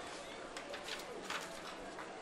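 Faint open-air stadium crowd ambience: a low murmur of distant voices and chatter, with a few brief sharper sounds around the middle.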